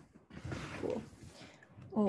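Indistinct, muffled voice sounds mixed with rustling from someone moving close to the microphone.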